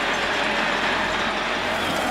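Large stadium crowd cheering and shouting in one steady wall of noise, reacting to a blocked field-goal attempt.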